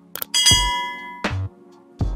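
Two quick click sound effects, then a bright bell ding that rings out for most of a second: the notification-bell sound of a subscribe-button animation. Background music with a steady beat runs underneath.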